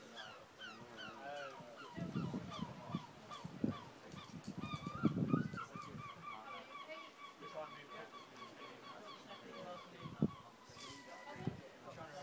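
Birds calling in a fast, continuous chatter of short, falling notes. Between about two and six seconds in come loud bursts of the climber's breathing and straining, and a single sharp knock comes about ten seconds in.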